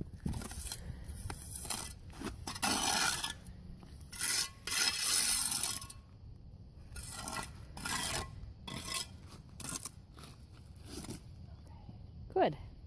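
A boot sole scraping gritty dry concrete mix across a driveway crack to work it in, in a series of irregular scrapes, the longest about a second long near the middle.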